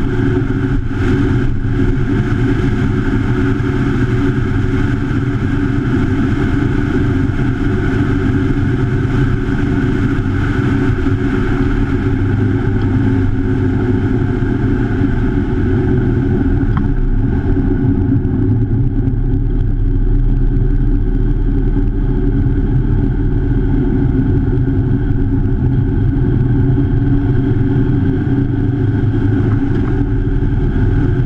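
Motorcycle engine running steadily at road speed, with wind rushing over the bike-mounted camera. The rushing eases a little about halfway through.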